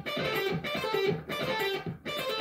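Electric guitar playing a quick run of single lead notes high on the neck, in short phrases with brief breaks between them.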